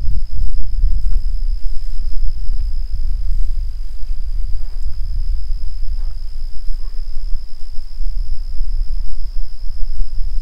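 Wind buffeting the microphone with a low, uneven rumble, over a steady high-pitched insect trill, crickets, that never stops. A few faint ticks come in the middle.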